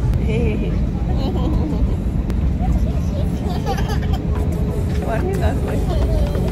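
Airliner cabin noise, a steady low rumble throughout, with a toddler's babbling and laughter and soft voices over it.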